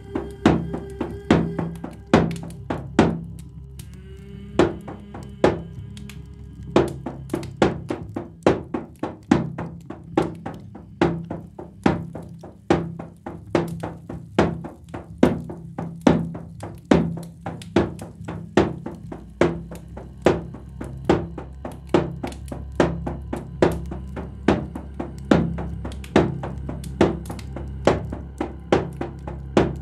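Drum struck over and over in a loose rhythm, about two to three strikes a second, above a low steady drone. The drumming thins to a few strikes about four seconds in, then picks up again about seven seconds in and keeps going.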